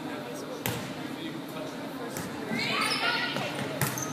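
A volleyball struck twice on a gym court, two short smacks with echo, about half a second in and just before the end. Players' voices call out in the second half.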